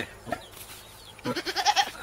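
Goat bleating once about a second and a half in, a short wavering call.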